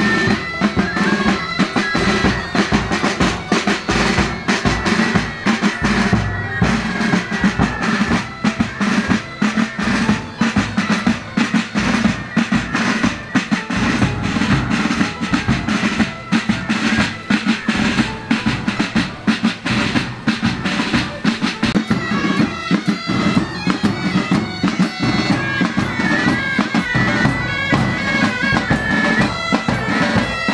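Marching pipe band playing: bagpipes sounding a steady drone and melody over a continuous rattle of side drums and a bass drum beating time.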